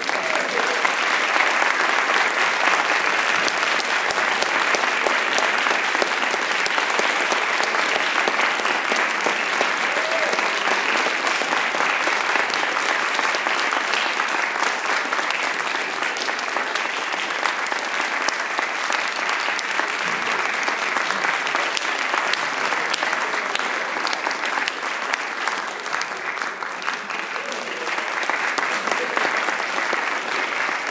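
An audience applauding steadily, with the clapping swelling again slightly near the end.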